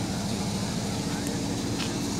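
Steady low hum and rumble of outdoor background noise, with no clear speech.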